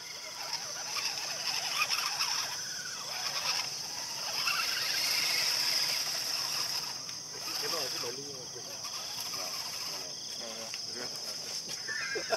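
Steady high drone of insects, with the faint whine of a small electric RC crawler motor as the truck climbs and tips over on a dirt mound.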